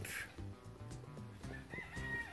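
A rooster crowing, starting near the end, over faint steady background music.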